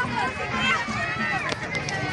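Several people's voices talking at once, with a few short sharp clicks in the second half.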